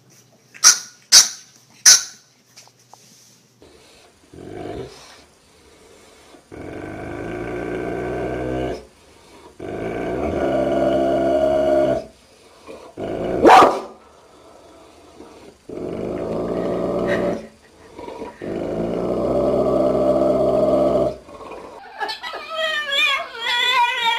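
Three short, sharp yips about a second in. These are followed by a large mastiff-type dog growling in long, low, rumbling spells of two to three seconds each, with one loud bark midway.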